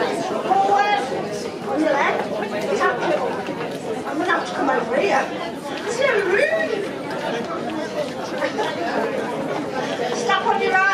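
Many people chatting at once, overlapping conversations with no one voice standing out.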